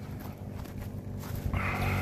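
Footsteps through dry grass and brush, with the stems rustling louder from about halfway in. A faint steady hum runs underneath.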